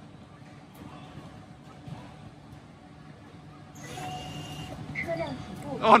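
Neolix self-driving electric vending vehicle starting to pull away: about four seconds in, a steady electric whine with a hiss comes in over a low background hum. A voice exclaims at the very end.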